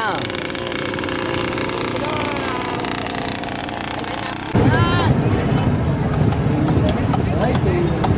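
A steady engine hum made of several held tones, with faint talk over it. About four and a half seconds in it cuts abruptly to a louder, rough, low running sound of a boat's engine under way on the water.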